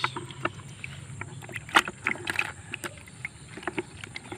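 Small splashes of water in a bucket of live caught fish as a hand reaches in among them, a handful of short, sharp splashes with the loudest a little under two seconds in.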